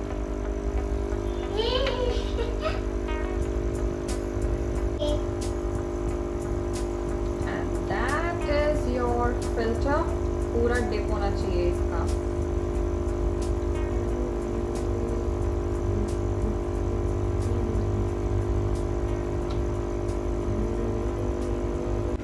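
Aquarium air pump and filter running: a steady electric hum over bubbling water from the air stone. A child's voice comes in twice.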